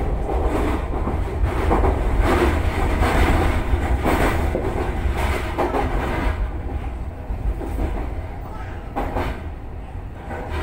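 Running noise of a Toei Mita Line 6500-series electric train heard inside its cab, a steady rumble with wheel clicks over rail joints as it slows. It is loudest in the first half, while a train passes on the next track, and it eases off as the train slows.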